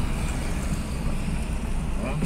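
Steady road and engine noise inside a moving car, a continuous low rumble with an even hiss above it.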